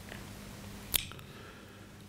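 Faint room tone with a single short, sharp click about a second in.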